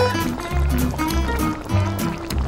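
Instrumental background music with a bass line and a steady beat.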